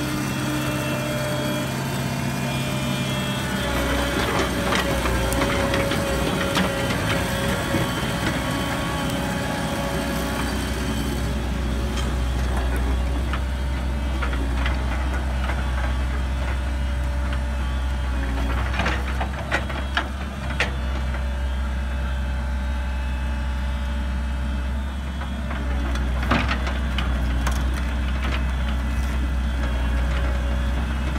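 Komatsu PC100-5 crawler excavator's diesel engine running steadily under work, with a whine from about four to eight seconds in and a few sharp metallic clanks from the machine now and then.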